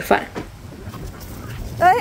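Small spitz-type dog giving one short whine that rises and then falls in pitch, near the end, as it plays with a ball.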